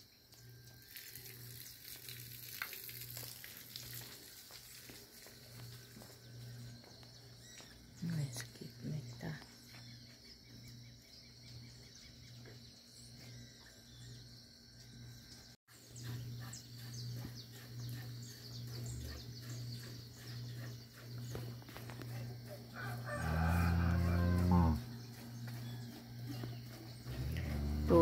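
Farmyard sounds: a rooster crowing, and near the end one loud, low cow moo lasting about two seconds, over a steady low hum.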